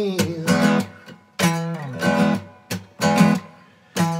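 Acoustic guitar strummed in short groups of chords, each left to ring and die away, with brief near-silent gaps just after a second in and near the end.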